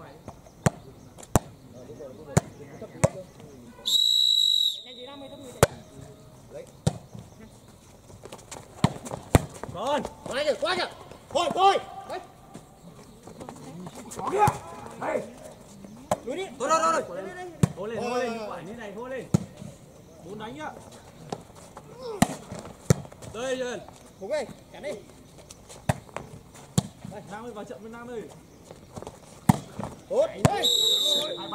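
A ball bounces about twice a second, then a referee's whistle blows once, loud and high, for about a second. A volleyball rally follows: sharp hits of the ball amid players' and spectators' shouts.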